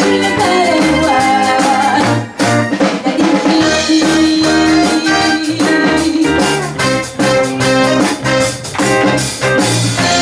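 Live pop band playing a cover of a 1970s Japanese pop song, with keyboard, electric guitar, electric bass and drum kit. The music briefly drops out a little over two seconds in, then carries on.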